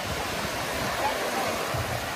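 Small waves breaking and washing up a sandy shore, a steady hiss of surf, with faint voices behind it.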